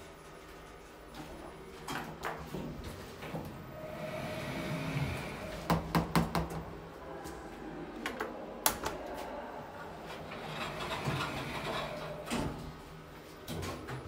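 OTIS Gen2 lift car at a stop: sliding doors moving, with clicks and knocks from the door mechanism. Several sharp clicks come near the middle, then one sharp click as a car-call button is pressed.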